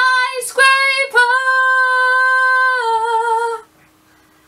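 A young woman singing unaccompanied: a few short notes, then one long held note that ends about three and a half seconds in.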